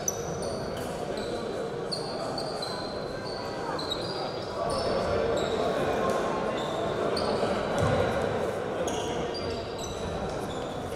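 Basketball shoes squeaking on a hardwood gym floor in short high chirps throughout, over a steady murmur of voices in the hall that grows louder about halfway through.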